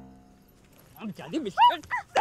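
A held music chord fades out. About a second in, short high-pitched yelping cries begin, rising and falling in pitch, with the loudest near the end.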